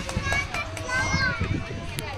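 Children playing and calling out on a playground, several high voices overlapping, one held call through the middle.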